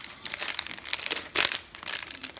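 Small clear plastic bag crinkling as it is handled, in irregular rustles with the loudest burst about one and a half seconds in.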